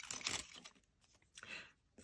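Faint rustling and light scraping as seashells are picked up by hand and set down on a canvas-covered board: a short burst at the start and a brief one about a second and a half in.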